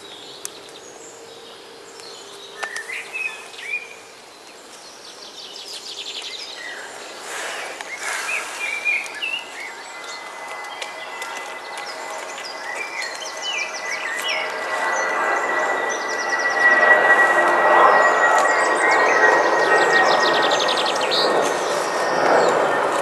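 Woodland birds calling and singing in short chirps and trills over a background hiss. The hiss grows louder through the second half, joined there by a steady high tone.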